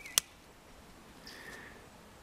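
A single sharp click just after the start, then quiet outdoor background with a faint bird chirp a little past the middle.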